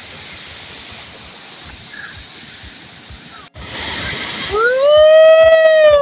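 Steady rush of flowing water. About three and a half seconds in, it jumps to the louder splashing of a waterfall close up. A woman's long high-pitched shriek then rises, holds for about a second and a half, and drops off at the end.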